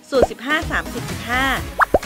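A woman's voice-over with background music. Just before the end there is a quick double pop sound effect, two short rising blips.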